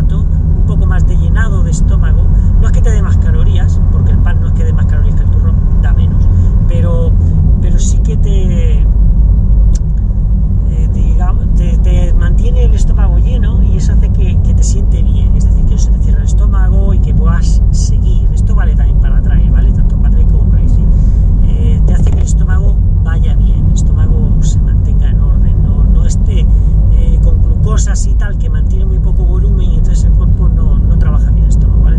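Steady low rumble of a car driving, heard from inside the cabin, with a man talking over it.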